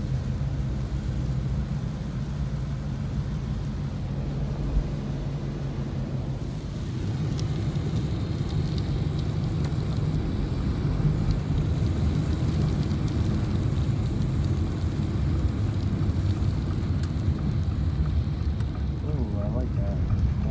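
Steady drone of a car's engine and tyres on a wet road, heard from inside the cabin with rain on the car; it grows louder about seven seconds in.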